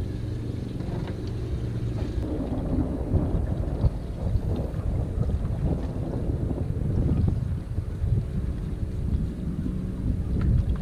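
Wind buffeting the microphone in an uneven low rumble, with a steady low hum underneath that is clearest over the first two seconds or so.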